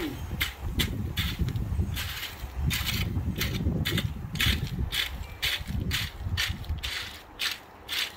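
Metal rake dragged through wet, gravelly concrete mix, spreading it along a foundation trench: repeated scraping, crunching strokes about two a second, easing off near the end.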